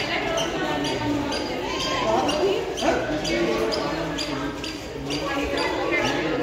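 Footsteps on a tiled floor in an echoing hall, steady throughout, with people's voices in the background.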